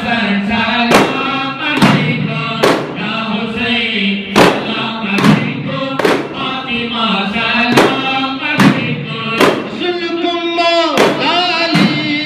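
Men chanting a Sufi devotional ratib together, accompanied by hand-held frame drums (daf) struck in unison at a steady beat, slightly faster than one stroke a second.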